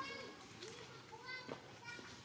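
Children's voices chattering in the background, with two short high-pitched cries a little over a second apart.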